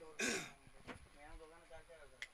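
A brief throat-clearing noise about a quarter of a second in. After it come faint, distant men's voices.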